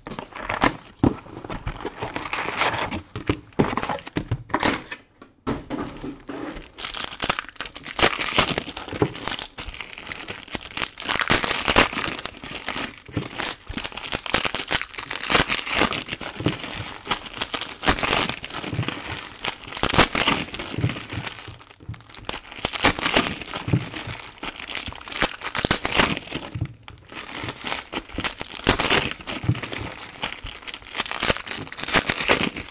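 Wrappers of 2019-20 Panini Prizm Premier League trading-card packs being torn open and crumpled, a dense run of crinkling with short lulls about five seconds in and near the end.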